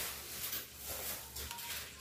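Faint rustle of a long paper supermarket receipt being handled, with a few light crinkles.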